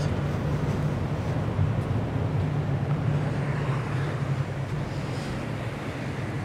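A yacht transporter ship under way at sea: a steady low drone from the ship, with wind on the microphone and the wash of the sea along the hull.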